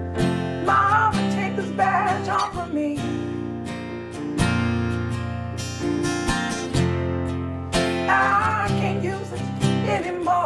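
Acoustic guitar and a Casio Privia digital piano playing together. The guitar strums over sustained piano chords that change every second or two, and a wavering melody line comes in twice above them.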